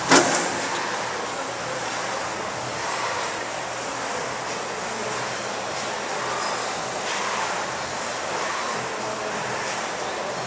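A sharp handling knock on the camera at the very start, then steady, even background noise of the room.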